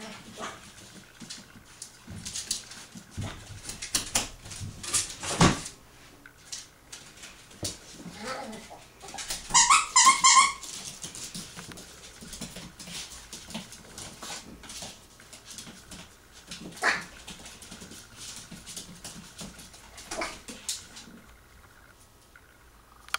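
A Yorkshire terrier puppy playing on a tile floor: scattered clicks and scrapes of claws and toys, with short high dog yips here and there, the loudest a quick run of yips about ten seconds in.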